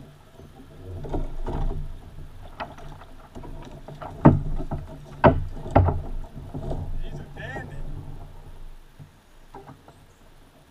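Knocks and thumps on a kayak as a hooked fish is lifted aboard on the line and handled, with three sharp knocks in the middle and a low rumble of handling noise on the hull-mounted camera.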